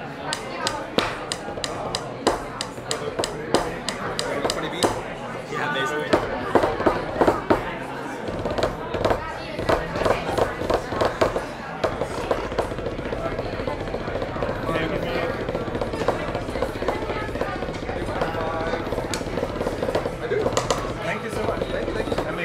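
Drumsticks drumming fast strokes and rolls on a practice pad, a quick run of sharp taps at first, then on and off with short pauses. Crowd chatter goes on underneath.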